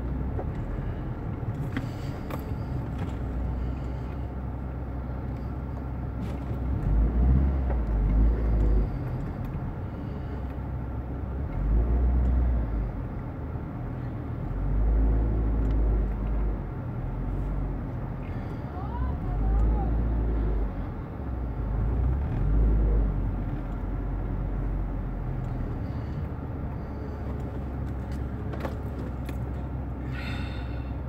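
Car engine running at a crawl, heard from inside the cabin, with a deep low rumble swelling up several times.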